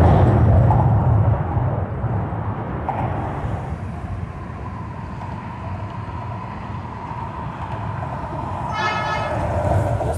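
Traffic crossing a steel truss highway bridge overhead: a heavy low rumble, loudest in the first second, settling into a steady rumble and hum of tyres on the deck. A short high tone sounds near the end.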